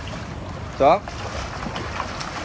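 Steady swimming-pool noise of water lapping at the pool edge, with one short spoken word about a second in.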